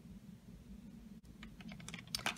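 Light clicks and taps of lip pencils knocking against each other and against a clear acrylic organizer as they are picked through, starting about halfway and coming more often toward the end, over a faint low room hum.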